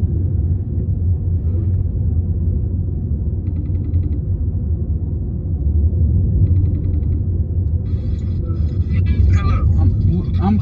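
Steady low rumble of a moving car, heard from inside the cabin. An outgoing FaceTime call rings out of the phone twice, about three seconds apart. Voices start near the end as the call connects.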